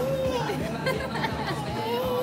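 A toddler girl laughing, over background chatter.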